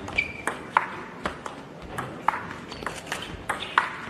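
Table tennis rally: the plastic ball clicking off the bats and the table in a quick, uneven run of hits, roughly two to four a second. A brief squeak sounds near the start.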